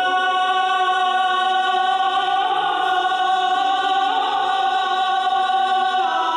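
A choir of voices chanting an Islamic devotional chant (salawat), holding one long sustained note that wavers slightly in pitch.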